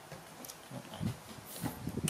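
Young macaques scrambling and jumping about on a bed: several soft thumps on the mattress, the loudest about a second in and again near the end, with brief rustling of the bedcover.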